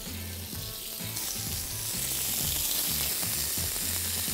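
Strips of raw sirloin steak sizzling as they are laid into a smoking-hot frying pan. The sizzle grows steadily louder as more strips go in.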